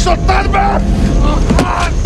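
Voices speaking over a steady low drone and rumble; the drone fades out about three-quarters of the way through.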